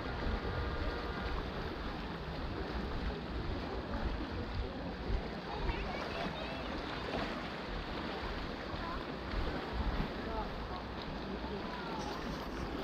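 Seaside ambience: wind on the microphone and a steady wash of sea noise, with faint, distant voices of people on the beach and in the water.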